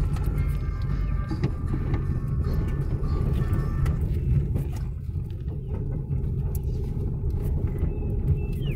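Car driving slowly on a rough dirt road, heard from inside the cabin: a steady low engine and road rumble with small knocks as the wheels go over the ruts.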